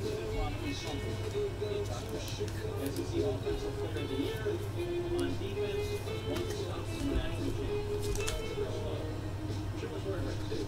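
Television playing in the background: a sports broadcast with a voice over music, steady and lower than the nearby talk.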